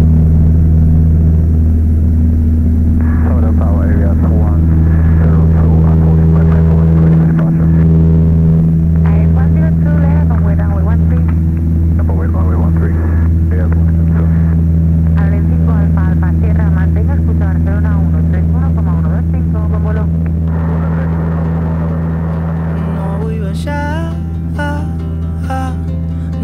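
Cessna 152's four-cylinder Lycoming O-235 engine and propeller at full takeoff power, a loud steady drone through the takeoff run and climb-out. Voices sound over it through the middle, and guitar music comes in near the end as the drone slowly fades.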